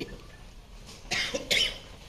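A person coughing twice in quick succession, a bit over a second in.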